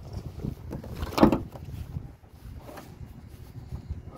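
One sharp, loud knock a little over a second in, against a low rumble of footsteps and camera handling beside the pickup.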